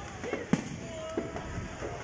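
Fireworks going off: one sharp, loud bang about half a second in, followed by several fainter pops.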